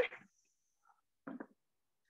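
Mostly silence: a woman's voice trails off at the very start, then one brief faint sound a little past halfway.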